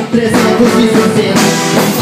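Live arrocha band music played loud, with sustained keyboard-like tones and a drum beat.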